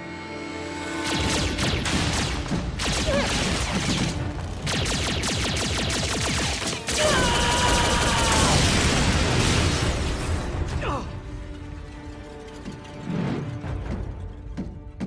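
Cartoon sci-fi battle sound effects: energy-weapon blasts and mechanical clatter over a music score. The dense noise comes in about a second in, stays loud until about eleven seconds, then dies down.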